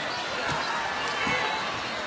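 Basketball dribbled on a hardwood court: a few bounces under steady arena crowd noise.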